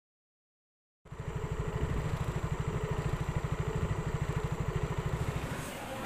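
A small engine idling with an even low pulse, about eight beats a second; it starts abruptly about a second in and drops away near the end.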